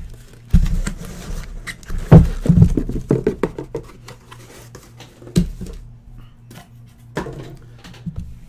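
Shrink-wrapped trading-card boxes being pulled out of a cardboard case and set down on a desk: cardboard and plastic rustling with several dull thumps, the loudest about two seconds in.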